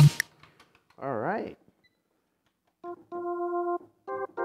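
A Korg Triton workstation's organ patch plays a short note and then a held steady note near the end. A brief wavering pitched sound comes about a second in.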